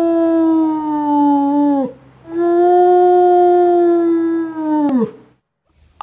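A wolf howling: two long, steady howls, each sliding down in pitch as it ends, the second beginning about two seconds in and ending about five seconds in.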